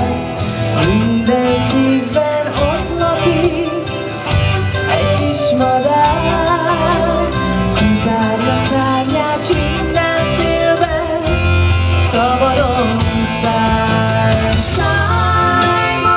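A woman singing live into a microphone, her held notes wavering with vibrato, over instrumental accompaniment.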